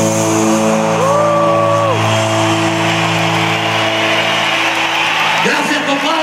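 A live rock band holds a sustained chord with no beat as the crowd cheers and whoops, and a long voice note rises and falls about a second in. Near the end a voice calls out over the music.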